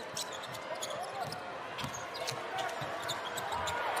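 Live basketball game sound in an arena: a ball being dribbled on the hardwood court over a steady crowd murmur, with scattered short, sharp squeaks and taps from the players' shoes.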